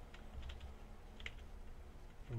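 A few faint keystrokes on a computer keyboard while typing, the clearest about a second and a quarter in, over a low steady hum.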